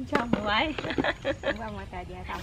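Speech only: a person talking in a conversational voice.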